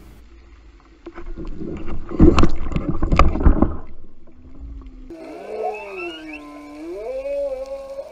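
Underwater knocks and crunching as a shark strikes and bites at the baited camera pole, heard slowed down, the loudest hits a second or so apart. After that comes a low moaning tone that glides down and back up.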